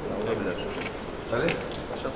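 Indistinct murmur of men's voices over a steady buzzy room hum, with a louder snatch of talk about one and a half seconds in.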